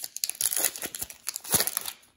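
Wrapper of a Donruss basketball card pack crinkling and tearing as it is ripped open by hand, with a louder rip about one and a half seconds in.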